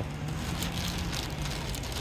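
Thin clear plastic bag rustling and crinkling in the hands as slabs of cassava pie are slipped into it, with short crackles throughout over a steady low hum.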